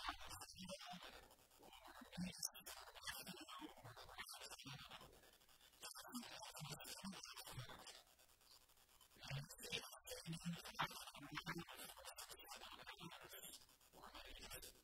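A priest's voice speaking faintly into a lectern microphone, with short pauses.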